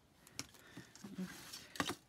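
Faint ticks and rustles of thin jewellery wire being wrapped by hand around thicker wires, with a sharper click near the end.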